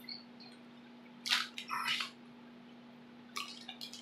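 A man's mouth and breath sounds: two short breaths about a second and two seconds in, then a few faint lip smacks near the end, over a steady low hum.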